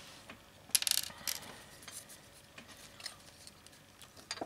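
Small brass rivets clinking: a short rattle of quick metallic clicks about a second in, then a few faint clicks as the pieces are handled.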